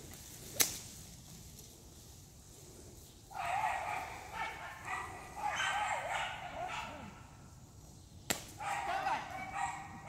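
Dogs whining and yipping excitedly in bursts, starting about three seconds in. There are two sharp cracks, one about half a second in and one near the end.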